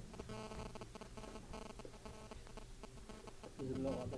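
A pause in a man's speech: faint room tone with a low steady hum, and a brief low vocal sound shortly before the end.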